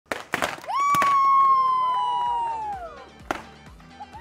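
Several sharp pops from handheld confetti party poppers going off, over music with one long held note that slowly sinks in pitch and then falls away near the end.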